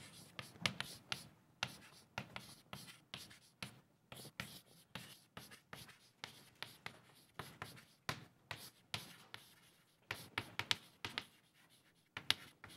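Chalk writing on a blackboard: a faint, irregular run of short taps and scratches as letters are chalked up, coming thicker near the end.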